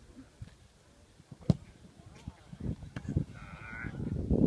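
A football kicked hard once from the corner flag, a single sharp thud about a third of the way in. Near the end comes a brief high-pitched shout.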